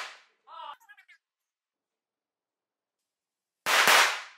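A small firework strapped to a toy action figure going off: two short, sudden bursts with fading hiss, one at the very start and another about three and a half seconds later, with silence between.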